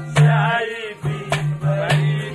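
Haryanvi folk ragni music: a singing voice over a steady low held instrumental note, with a few sharp drum strikes.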